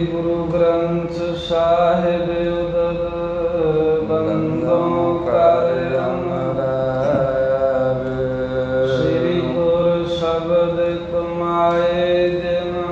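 A man's voice chanting a drawn-out, melodic religious invocation over a steady held drone.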